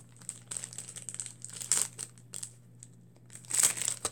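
Paper tissues or their packet crinkling as they are handled close to the microphone, in irregular rustling bursts. The loudest bursts come just under two seconds in and again near the end.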